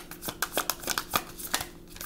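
A deck of tarot cards shuffled by hand, giving a quick series of sharp card snaps and slaps at about six a second.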